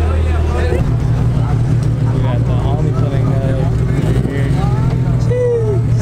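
A car engine running at low revs, a steady low hum that steps up in pitch a little under a second in and then holds, with people talking around it.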